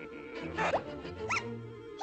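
Cartoon orchestral score with a quick rising zip-like swoop sound effect just after half a second in, then a short high squeak that rises and falls.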